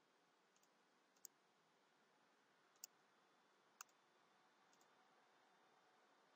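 Near silence with a few faint, sharp computer mouse clicks, three of them plainest, spread through the stretch.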